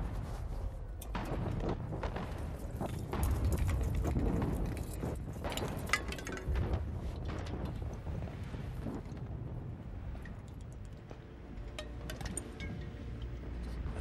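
Battlefield ambience in a film soundtrack: a steady low rumble with scattered sharp cracks and knocks, loudest about four and six seconds in. Soft sustained tones come in near the end.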